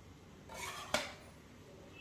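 A metal spatula stirring and scraping roasting wheat flour in a steel kadai, with one sharp clink of metal on the pan just before a second in.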